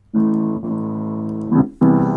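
Upright piano played in blocked chords, the hand positions of an A minor arpeggio: a chord, a second chord about half a second later, then a short break before a third chord near the end. The sound is thin and cut off at the top, as heard through a Skype call.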